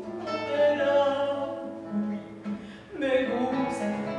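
A woman singing with classical guitar accompaniment: she holds a long note, the guitar carries on alone with plucked notes for about a second, and the voice comes back near the end.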